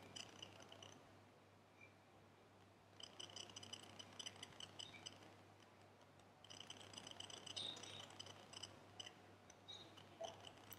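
Near silence: room tone with a steady low hum and faint, high-pitched rapid ticking that comes and goes in stretches of a few seconds.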